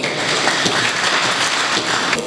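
Audience applauding steadily, a dense even patter of many hands clapping.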